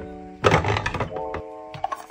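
A clear plastic drawer thunking shut about half a second in, followed by a few light plastic clicks near the end, over soft background music with sustained notes.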